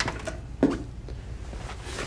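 Soft clicks and a short knock from the open driver door of an SUV and someone handling it, over a low steady hum.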